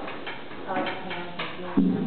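Voices talking over a faint held musical tone. Near the end a louder instrument note is struck and held.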